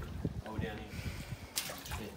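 Small water lapping and sloshing around jetty pilings, with faint handling knocks and one sharp click about one and a half seconds in.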